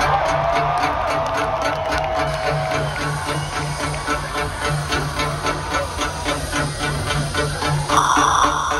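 Live rock concert music through a large outdoor PA, recorded from the crowd: a steady pulsing beat over a low bass pulse. A single long high tone holds over it for the first few seconds, then fades out.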